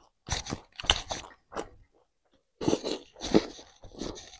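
Close-miked chewing and crunching of a mouthful of rice and fried pork, in irregular crisp bites that come in two bunches, the second starting a little past halfway.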